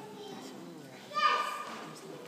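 A young child's voice cries out once, high-pitched and short, about a second in, over low background voices.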